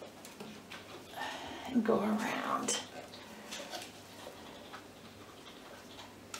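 Small clicks and rustles of hands working on a handmade stick and its materials. A short, soft murmured voice sound comes about a second and a half in, without clear words.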